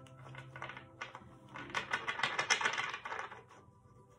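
A tarot deck being shuffled by hand: a rapid run of crisp card clicks starting about a second and a half in and lasting about two seconds.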